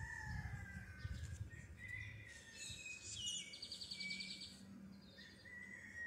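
Faint bird chirps and short whistles, with a quick trill of repeated notes about halfway through, over low outdoor rumble.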